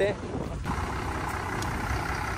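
Ashok Leyland dumper truck's diesel engine running steadily at low revs.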